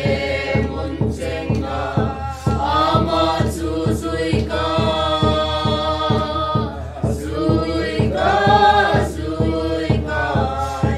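A small mixed group of men and women singing a hymn together in parts, with a steady low pulse of about three beats a second underneath.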